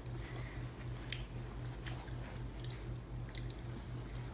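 People chewing jelly beans with their mouths, giving small scattered sticky clicks and smacks. A low hum runs underneath.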